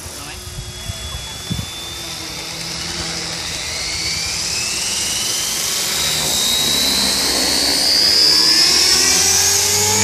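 JR Forza 450 electric RC helicopter spooling up for takeoff: the whine of its motor and rotor rises steadily in pitch and loudness from about two seconds in, with a few light knocks in the first second and a half.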